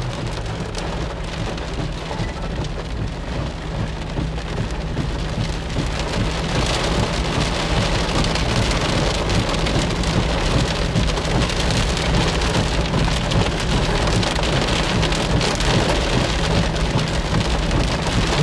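Heavy monsoon rain drumming on a car's windshield and roof, heard from inside the cabin, with a low steady hum underneath. The rain grows heavier about six seconds in.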